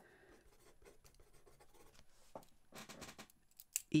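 Faint scratching of a pen writing on paper, with a few soft clicks near the end.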